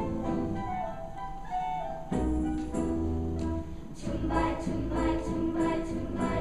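Children's choir of about sixty fifth-graders singing a round, the parts entering one after another, over a steady accompaniment.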